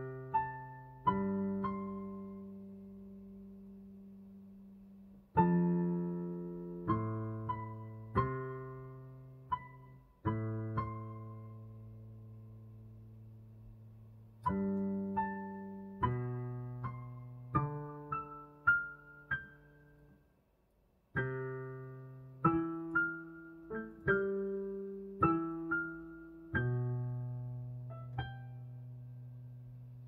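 Digital piano played slowly by a beginner: chords and single melody notes struck one after another, each left to ring and fade, with a short break about twenty seconds in. It ends on a held low chord.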